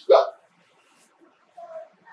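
A man's voice over a microphone: one short, loud exclaimed syllable at the very start, then a pause with only faint room sound and a brief faint tone near the end.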